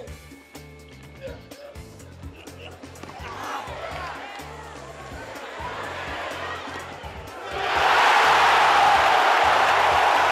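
Tennis stadium crowd reacting to a rally: murmuring builds over the point, then a loud burst of cheering and applause breaks out about seven and a half seconds in, greeting a spectacular winning shot. A background music bed runs underneath.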